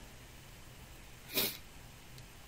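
Quiet room tone broken by one short, breathy puff about one and a half seconds in: a quick breath through the nose close to the microphone.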